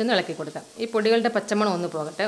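A woman speaking over faint sizzling of onions, green chillies and ground spices frying in oil in an open pressure cooker, stirred with a wooden spatula.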